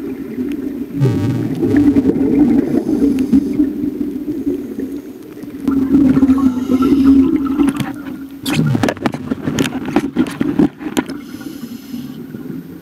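Scuba regulator breathing heard underwater: exhaled bubbles rumble and gurgle in two long bursts, the second about six seconds in, then crackle sharply as they stream past near the end.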